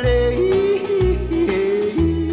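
Male voice yodeling in a country song, a held vocal line that breaks and jumps between notes, over a band accompaniment with a low bass note on about every beat.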